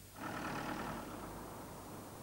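A car engine running, coming in just after the start and slowly fading away.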